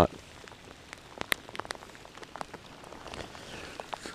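Light rain: a faint steady hiss with scattered single drops ticking on nearby surfaces.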